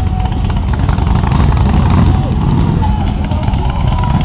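Several cruiser motorcycle engines running with a steady low rumble as a group of bikes rolls into a parking lot.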